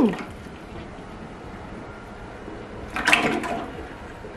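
Peanut oil pouring from a plastic jug into the pot of an electric turkey fryer: a steady splashing trickle, with a louder burst about three seconds in.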